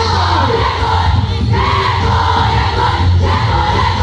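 Loud music for a quadrilha junina dance, mixed with the noise of a crowd and many voices singing together. A strong bass line runs steadily underneath.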